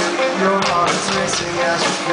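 Live rock band playing loud, with electric guitar, held notes and regular drum hits.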